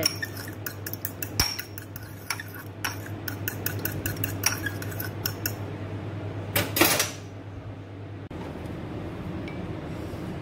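A metal fork beating a raw egg in a small ceramic ramekin, its tines clicking rapidly against the bowl. Just before seven seconds in comes one louder clatter, and after it the clicking stops.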